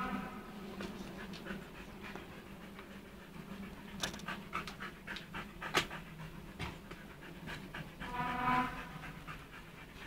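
Husky puppy giving a short, steady-pitched whine near the end, with scattered sharp clicks and taps a few seconds before it.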